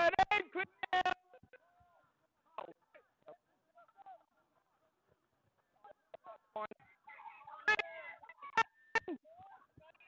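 Short shouted calls from players on a rugby league field, in quick bursts near the start and again in the last few seconds, with a few sharp knocks among them.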